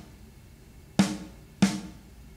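Raw, unprocessed EZdrummer snare drum sample played solo. It strikes twice, about a second in and again just over half a second later, each hit a bright crack with a short ring. The sample is already pre-mixed, and its top end is bright enough to need some cut.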